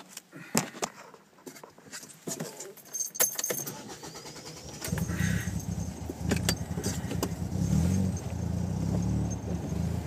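Clicks and rattles of handling, then about five seconds in deep bass from a car's pair of 10-inch Type R subwoofers in a D-slot ported box starts up: heavy low notes with nothing heard above them, going on steadily with the beat.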